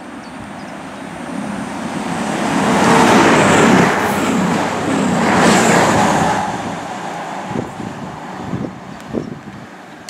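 A CrossCountry Class 220 Voyager diesel-electric multiple unit passes through the station at speed. Its rush of engine and wheel noise builds, is loudest between about three and six seconds in, then fades as it recedes.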